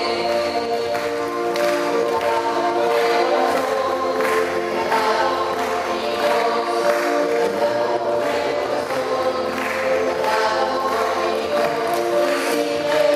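A choir singing a hymn together, held notes over a steady rhythmic accompaniment.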